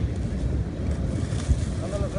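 Wind buffeting the microphone as a steady low rumble, with one sharp knock about one and a half seconds in.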